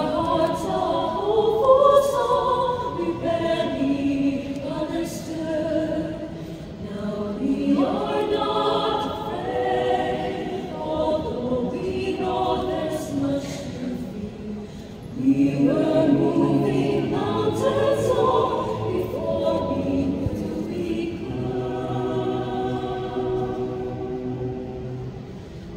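Mixed-voice choir singing unaccompanied in parts, phrases swelling and falling, with a louder, fuller entry about halfway through and a held chord near the end.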